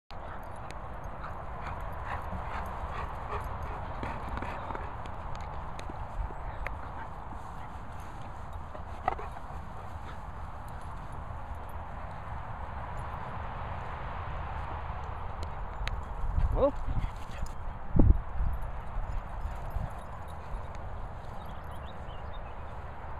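Wind and handling rumble on a phone microphone with footfalls on grass as someone walks across a field. A person says a short "oh" about three-quarters of the way through, and a loud low thump follows a moment later.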